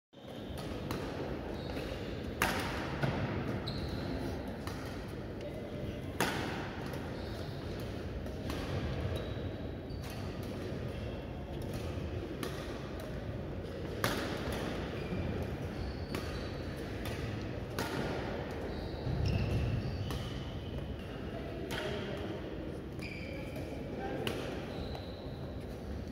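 Badminton rackets striking a shuttlecock in a rally: sharp, short cracks a few seconds apart, over a background of voices.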